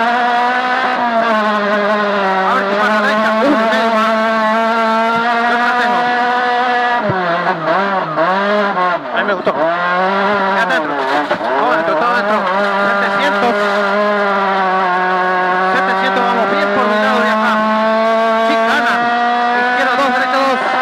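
Rally car engine heard from inside the cabin, running at high, steady revs on a gravel stage. About seven seconds in the revs fall and climb again several times over a few seconds, then settle back to a steady high pitch.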